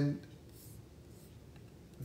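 The end of a drawn-out spoken "And", followed by a pause with only faint room noise.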